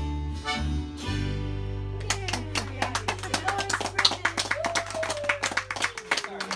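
Accordion and guitars play the closing chords of a song, the last one held. About two seconds in, a few people start clapping, and a voice calls out partway through the applause.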